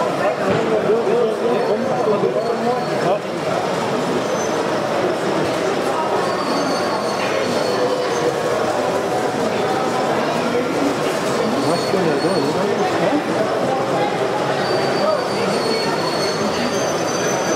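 Steady babble of many voices talking at once in a busy hall, with a few faint, thin high squeals now and then, likely from the moving model trains.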